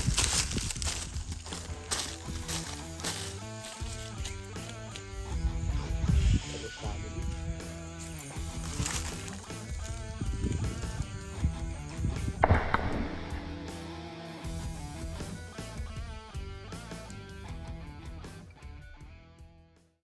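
Background music with sustained chords, fading out at the end.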